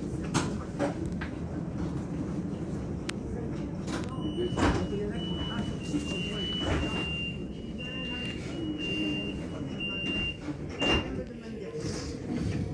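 Bombardier Flexity Outlook tram standing at a stop, its door warning sounding as a run of short, high beeps on one pitch for about seven seconds, starting about four seconds in. A steady low rumble lies under it, with a few sharp knocks, the last near the end as the beeping stops.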